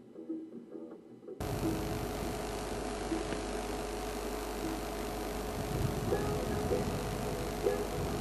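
Safari game-drive vehicle's engine idling: a steady low rumble with hiss that cuts in suddenly about a second and a half in.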